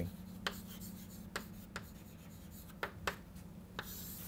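Chalk writing on a chalkboard: about six short, sharp taps and scratches as letters are written, with a longer scraping stroke right at the end as the words are underlined.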